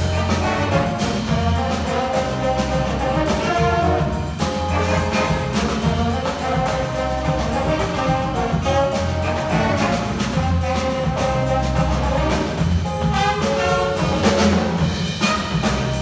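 Jazz big band playing live, with the brass section of trombones and trumpets out front over bass, piano and drum kit.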